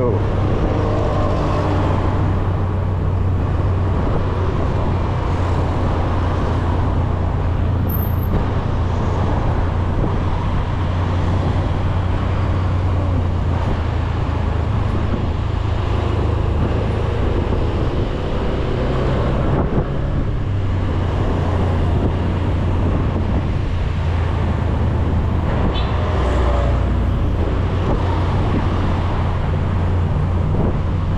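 Honda scooter's small engine running steadily while riding in traffic, a continuous low drone under road and traffic noise.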